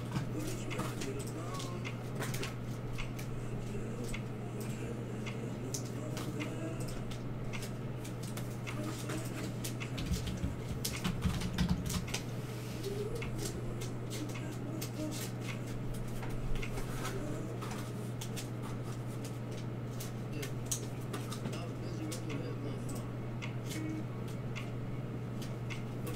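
A steady low electrical hum, with scattered faint clicks and faint indistinct talk in the background.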